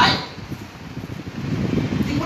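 A pause in a man's speech: the tail of a word at the very start, then low, steady background rumble and room noise.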